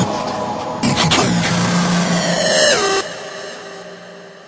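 Loud, noisy, engine-like sound effect within an electronic dance track. A low steady tone sits under it, then the pitch slides downward. It cuts off about three seconds in, leaving an echoing tail that fades away.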